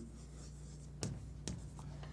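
Chalk writing on a chalkboard: a few short taps and scrapes, the first about a second in and more near the end, over a steady low hum.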